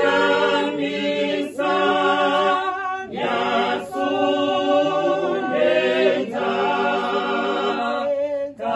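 Small mixed choir of men and women singing a cappella, with no instruments, in held notes. The phrases break for a breath every second or two.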